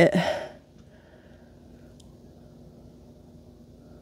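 A word of speech trailing off at the start, then quiet room tone with a faint steady hum and one faint tick about two seconds in.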